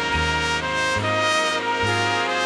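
Jazz big band playing, with a featured solo trumpet over the saxophone and brass sections, piano, bass and drums. Sustained notes and chords, with the bass note changing about once a second.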